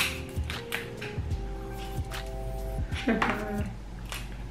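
Soft background music with steady held tones. Over it come sharp cracks and snaps of snow crab leg shells being broken apart by hand, the loudest a crack right at the start.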